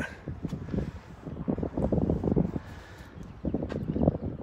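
Wind buffeting the microphone, rising and falling in uneven gusts, with a couple of faint clicks.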